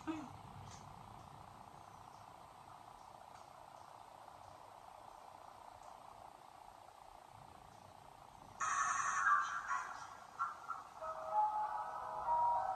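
Faint steady room hum, then about eight and a half seconds in the playback of a rap music video starts abruptly with a noisy opening, and a melodic intro comes in near the end.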